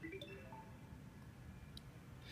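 A faint, short electronic chime: a few brief tones at different pitches in the first half second as the conference system joins the meeting, then quiet room tone.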